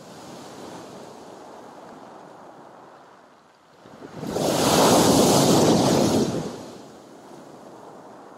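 Sea surf washing onto a pebble beach, then a bigger wave breaking loudly about four seconds in, its wash dying away over the next two seconds.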